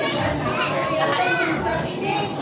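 Several children's voices at once, chattering and calling out over each other while they play.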